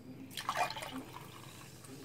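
Fizzy energy-drink mixture sloshing in a glass tumbler as the glass is tilted and moved. There is a short burst of splashing about half a second in, then only faint liquid sounds.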